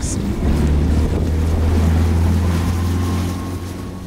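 Yamaha outboard motor driving an aluminum skiff away across open water, a steady low engine hum with rushing water and wind on the microphone.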